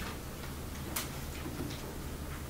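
Quiet room with a steady low hum and one sharp click about a second in, followed by a few faint ticks.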